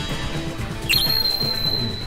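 Background music with an added sparkle sound effect: about halfway through, a quick upward glide into a high, thin ringing tone that holds for about a second.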